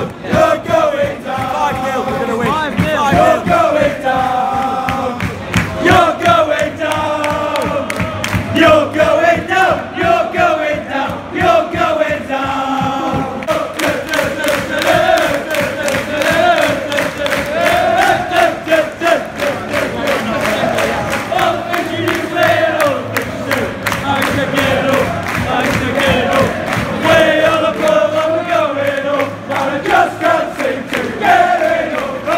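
Football supporters in a covered stand singing a chant together, a sustained melody from many voices. About halfway through, steady rhythmic hand-clapping joins the singing.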